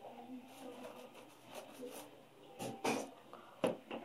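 Items being handled on a tabletop: a few short knocks in the second half, the loudest about three seconds in, as a plastic vinegar jug and a cardboard baking soda box are moved.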